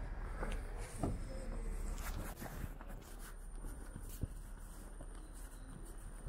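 City street ambience with footsteps on wet pavement and scattered short knocks and taps. A faint high steady tone comes in about three seconds in.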